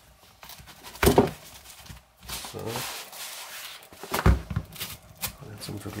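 Nylon fabric rubbing and rustling as folding knives are slid by their steel pocket clips onto the edge of a padded knife roll, with two sharp knocks, about one second in and about four seconds in.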